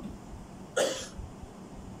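A single short cough from a man, about a second in.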